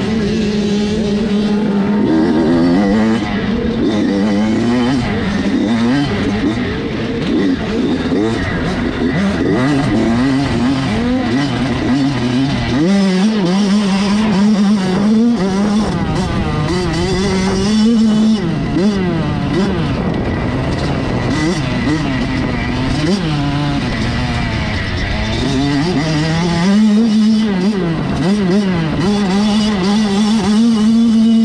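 Dirt bike engine being ridden hard on a motocross track, its pitch rising and falling over and over as the throttle opens and closes, heard close from the rider's helmet camera.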